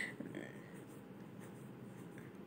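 Faint scraping of a wooden spatula stirring chopped onions and green chilli in a frying pan.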